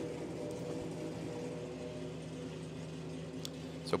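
Steady low hum of a vehicle engine idling, with several held tones that do not change in pitch.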